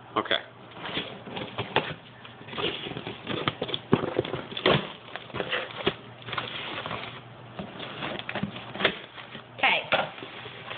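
A cardboard shipping box being opened by hand: packing tape being pulled, cardboard handled, and plastic wrapping crinkling and rustling, in irregular sharp crackles and scrapes.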